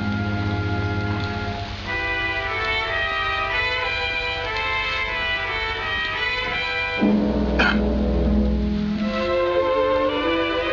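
Orchestral film score led by bowed strings, playing held chords that change about two seconds in and again about seven seconds in, where a low note enters.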